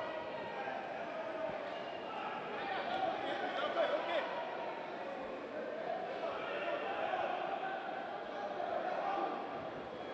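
Indistinct voices of a crowd of spectators talking and calling out, a steady chatter with no single clear speaker.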